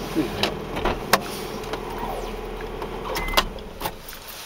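A vehicle running steadily, with several sharp clicks or knocks over it; the running sound drops away at the very end.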